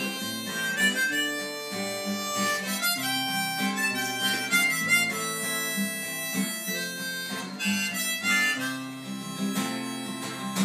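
Harmonica playing a melody over rhythmically strummed acoustic guitar chords.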